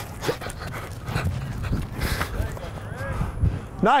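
Open-air practice-field ambience: faint distant shouting voices over a steady low rumble, with scattered faint clicks.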